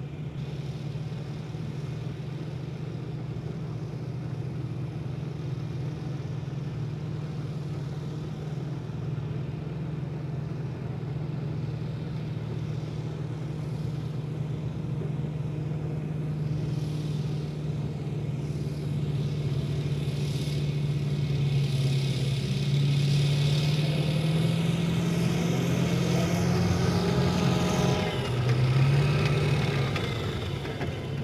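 Amphibious assault vehicle's diesel engine running with a steady low drone, growing louder as the tracked vehicle comes through the shallows toward the beach. Near the end a rising whine builds for a few seconds and cuts off suddenly as it climbs out onto the sand.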